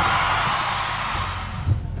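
Whooshing sound effect of a TV show's logo transition sting, a broad noisy swell that fades out smoothly over about two seconds.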